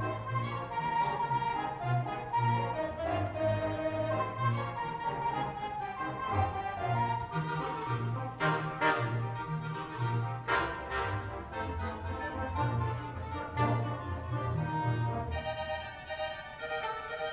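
Theatre pipe organ playing an up-tempo tune: a melody over a bass line of short, regular notes, with a few brighter accents about halfway through.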